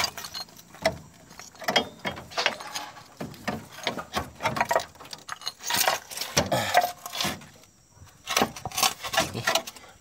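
Irregular scrapes and knocks of a Suzuki Carry Futura transmission block being pulled by hand over broken concrete from under the car, catching and shifting in a tight space.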